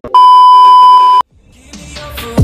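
A single loud, steady electronic beep tone, about a second long, that cuts off suddenly, the kind of bleep used as an edit sound effect. New music fades in near the end.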